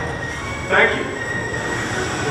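Steady mechanical rumble with a faint high whine from the stationary coaster train and ride system, and one short louder sound about three-quarters of a second in.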